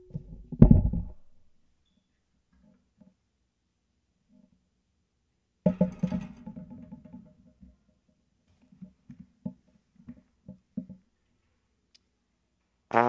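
Handling noise from a trombone being picked up and set up: a loud thump near the start, then a ringing metallic knock about six seconds in that dies away, followed by scattered light knocks and taps.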